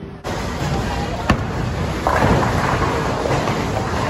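Rumbling din of a bowling alley: balls rolling down the lanes and striking pins. There is one sharp knock about a second in, and the rumble grows louder about halfway through.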